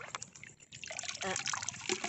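Shallow seawater trickling and dripping, with small splashes and clicks, as a hand grabs for crabs in the shallows.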